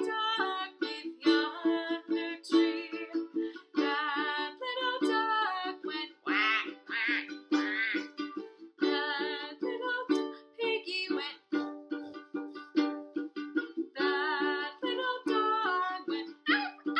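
A woman singing a folk story song with vibrato, accompanying herself on a Makala ukulele strummed in steady chords.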